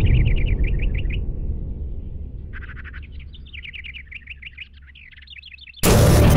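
Small birds chirping in quick repeated trills, in two spells, over a deep rumble that slowly dies away. Loud music cuts in right at the end.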